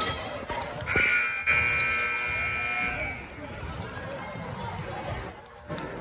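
Gym scoreboard horn sounding one steady blast for about two seconds, over a basketball dribbling on the hardwood court and voices in the gym.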